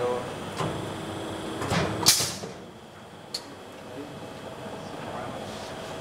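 Aluminium corner crimping machine working a window-frame corner: a knock, then a short, loud hiss about two seconds in, and a single sharp click a second later.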